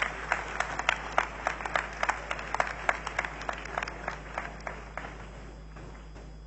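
Congregation applauding with scattered hand claps that thin out and die away near the end.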